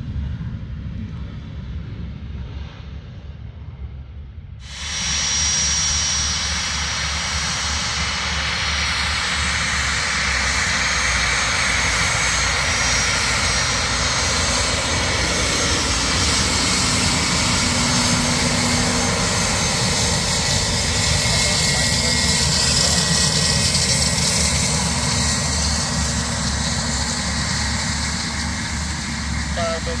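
Bombardier Challenger 350 business jet's twin Honeywell HTF7350 turbofans running close by as it taxis: a loud, steady jet roar with a high turbine whine on top. A quieter distant rumble gives way abruptly to the close roar about four and a half seconds in.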